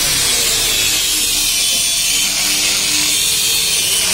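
Handheld electric angle grinder running steadily against the steel track frame of a combine harvester's undercarriage, a continuous high-pitched grinding.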